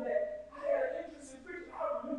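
A man's voice preaching into a microphone in drawn-out, pitched phrases.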